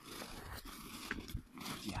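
Footsteps crunching in snow as two people walk side by side, with a short spoken "yeah" near the end.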